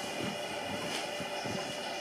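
Soft, irregular thumps and rustling of a small child stepping across a mattress and moving among bedding, over a steady background hiss.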